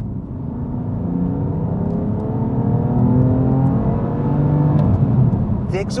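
BMW F80 M3 Competition's 3-litre twin-turbo straight-six with sports exhaust, heard from inside the cabin under hard acceleration: a low drone whose pitch rises slowly and that just gets louder. It is the note that is 'not really that great' despite the sports exhaust.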